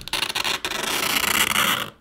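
A sharp metal tool scratching lines into a smartphone's metal back panel: one continuous scrape that stops just before the end.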